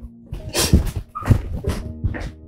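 A woman crying in a few loud, breathy sobs about half a second apart, over soft sustained background music.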